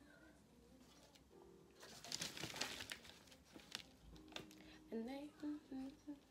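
Wet plaster bandage rustling and crinkling as it is handled and pressed onto a chicken-wire armature, with a few light clicks of the wire. Near the end a woman's voice hums or sounds a few short notes.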